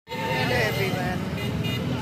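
Road traffic running steadily, with people's voices in the background.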